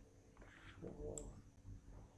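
A single faint computer-mouse click about a second in, over quiet room tone.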